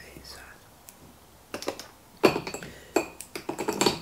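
Makeup products being handled on a table: a run of sharp clicks and clinks of hard compacts, cases and brushes being picked up and set down, starting about a second and a half in, the loudest about two seconds in.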